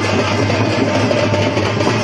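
Loud live drumming and percussion, dense and unbroken, over a steady low hum.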